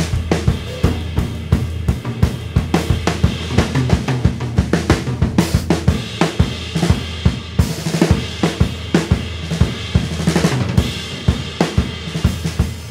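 Gretsch USA Custom drum kit in rock tuning, played continuously: snare and bass drum strikes under hi-hat and ride cymbal, several strikes a second.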